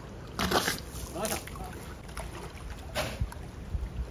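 Walrus splashing and sloshing the pool water as it swims on its back, heard as a few short splashes over a steady low hum.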